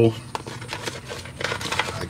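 Small metal seal picks from a Snap-on pick set clicking and clinking against each other as they are handled in their cloth pouch, a scatter of light metallic ticks.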